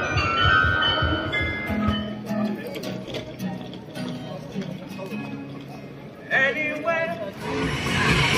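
The New Town Hall Glockenspiel's bells chiming a tune, cut off about two seconds in. Then a man sings in the open, with low held notes and a higher wavering phrase about six seconds in.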